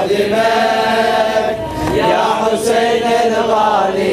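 Unaccompanied men's voices chanting the slow refrain of a Shia latmiya (Muharram mourning chant) in unison, with long held notes.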